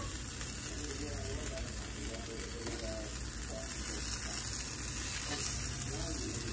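Chicken and diced green peppers frying on a hot griddle: a steady sizzling hiss.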